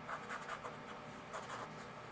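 Faint scratching of a pen tip drawn in short strokes across paper cardstock.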